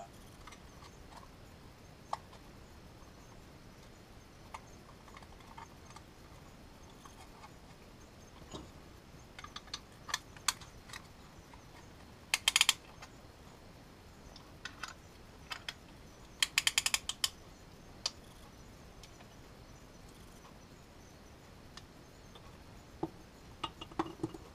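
Ratchet-type piston ring compressor being tightened around a piston, clicking in short bursts about halfway through, with scattered light metal clinks and taps from handling the piston and tools.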